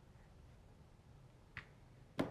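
Near silence: room tone, with one short, faint click about a second and a half in.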